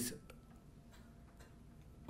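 A pause in a man's speech through a lectern microphone: a word ends at the very start, then faint room tone with a few very faint ticks.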